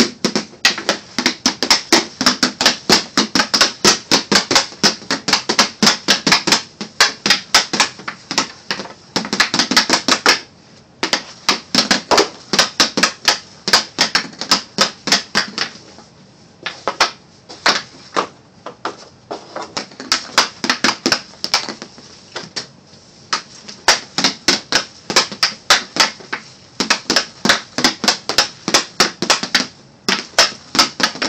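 Hockey stick blade clicking rapidly against a hard plastic four-ounce FlyPuck as it is stickhandled quickly side to side on a shooting pad, several sharp clacks a second, broken by a few short pauses.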